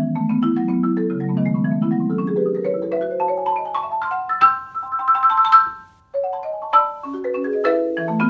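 Solo marimba played with mallets: low rolled chords under a melody that climbs in a rising run to a quick repeated high figure, breaks off for a brief moment just before six seconds in, then starts a new phrase.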